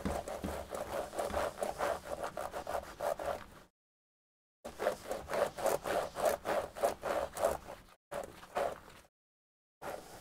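An antibacterial wipe rubbed quickly back and forth over a Lenovo Ideapad laptop's keyboard keys, a fast run of short scrubbing strokes. The strokes stop twice for about a second.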